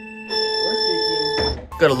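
A single held electronic tone, steady in pitch, lasting about a second and cutting off suddenly, with speech starting just after it.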